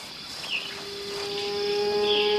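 A steady high drone of insects, with a short chirp about half a second in. Soon after the chirp, a held low note of background music fades in, and more sustained notes join it as it swells.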